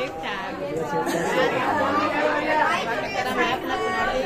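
Chatter of many people talking at once in a crowded room.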